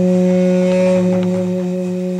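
Duduk, the Armenian double-reed woodwind, holding one low note steadily, easing off a little in loudness near the end.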